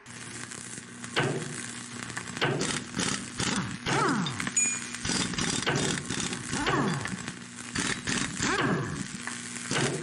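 Sound effect of a metal-cutting arc or torch: crackling, sizzling sparks over a steady electric hum, with several falling pitch sweeps as the cut moves along.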